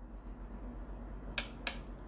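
Two short, sharp clicks about a quarter of a second apart, a little past the middle, over a faint steady low hum.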